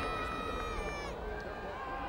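Voices calling out in long drawn-out shouts that fall in pitch about a second in, over crowd noise.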